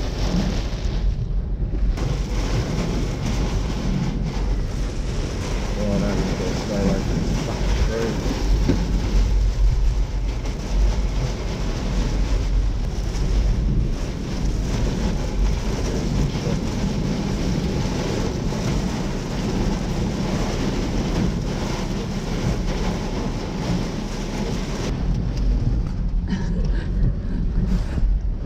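Hurricane-force tropical cyclone wind and driving rain buffeting a car, heard from inside the cabin: a loud, steady rush with a deep rumble.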